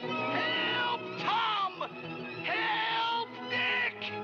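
Orchestral cartoon score playing, with several sliding, swooping notes.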